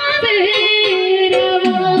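Live Chhattisgarhi folk song: a singer holds long, wavering notes over steady instrumental accompaniment, with a few hand-drum strokes in the second half.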